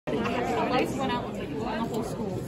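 Chatter of many people talking at once, overlapping voices with no one voice standing out.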